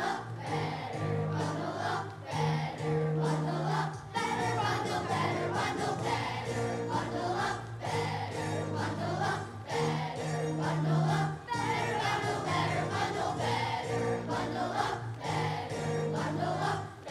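A children's choir singing and dancing to accompaniment that has a steady beat and sustained bass notes.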